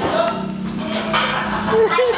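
Indistinct talking voices, not clear enough to make out words, over a steady low hum.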